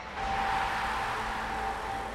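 News-channel sports-section intro sting: a swell of rushing noise comes in just after the start and slowly fades, over a single held synth tone.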